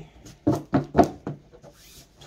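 Tarot cards being handled: a few sharp taps and slaps of cards against the deck and the table, with rubbing between them, the loudest about a second in, then a softer rustle.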